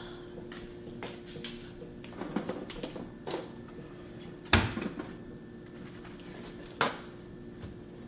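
Objects being handled on a kitchen counter: scattered light clicks and knocks, with two sharper knocks, the louder about four and a half seconds in and another near seven seconds, over a steady low hum.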